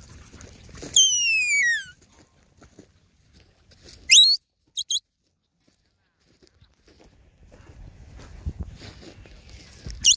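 Handler's whistled commands to a herding dog: one long falling whistle, then a short sharp rising whistle followed by two quick high pips.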